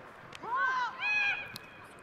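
Two high-pitched calls from women footballers on the pitch during play. They carry faintly from the field.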